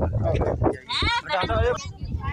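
People talking, with a loud quavering call about a second in.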